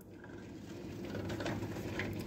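Faint rustling and ticking of a cardboard-and-plastic blister-pack toy package being handled and turned around by hand.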